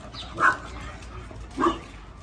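A puppy giving two short play barks about a second apart while wrestling with another puppy.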